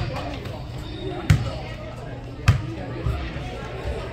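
Sharp thuds of a soccer ball being struck during play on indoor turf: three loud hits a little over a second apart, then a softer one.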